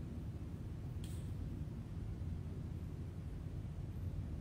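Steady low rumble of room tone, with one faint click about a second in.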